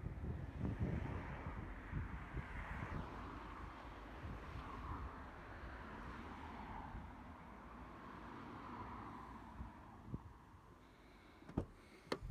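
Wind rumbling on a hand-held microphone outdoors with handling knocks, over a soft steady background of outdoor street noise. One sharp click comes near the end.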